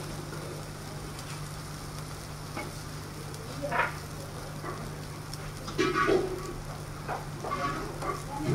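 Dosas sizzling on a hot flat griddle, over a steady low hum, with a few short louder sounds about four and six seconds in.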